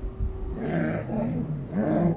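Dog barking repeatedly, about three barks roughly half a second apart.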